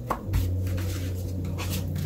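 Tarot cards being gathered and stacked by hand, with a few light knocks and taps of the cards in the first half second and softer handling after, over a steady low hum.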